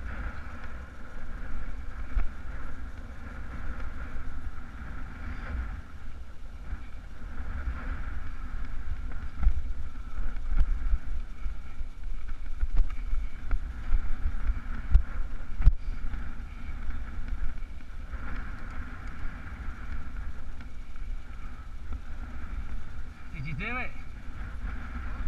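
Wind buffeting an action camera's microphone over the rumble and rattle of mountain-bike tyres on a rocky trail during a fast descent, with a sharp knock about two-thirds of the way through.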